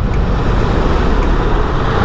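Steady, dense road-traffic noise heard from a motorcycle moving slowly among large trucks: heavy engine and tyre rumble with a rushing hiss over it.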